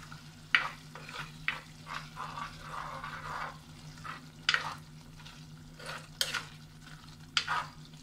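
A plastic ladle stirring thick curry in a clay pot, with a handful of sharp scrapes against the pot at irregular intervals over the soft sizzle of the simmering curry.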